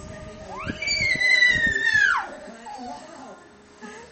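A toddler's single high-pitched squeal, about a second and a half long, that rises, holds and then drops off sharply.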